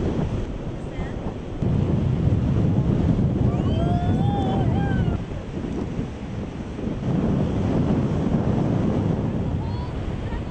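Wind buffeting the microphone over the wash of breaking ocean surf, rising and falling in gusts. About four seconds in, a short wavering high call, like a distant voice, sounds over it.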